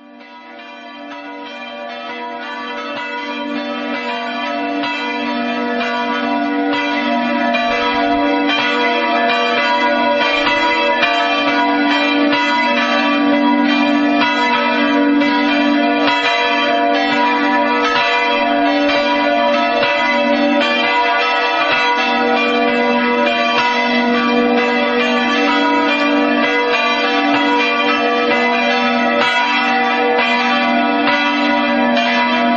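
Church bells pealing, several bells ringing together in a continuous wash of overlapping tones, fading in over the first few seconds and then holding steady.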